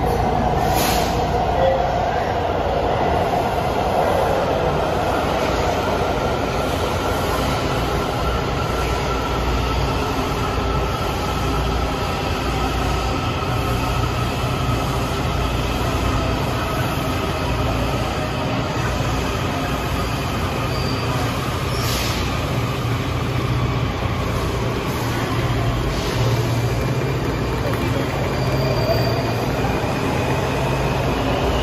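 Washington Metro Red Line subway trains in an underground station: a steady rumble with faint whining tones that slide slowly in pitch. A low hum sets in about halfway.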